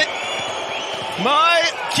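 Steady din of an ice hockey arena crowd, then a man commentating in French from about a second in.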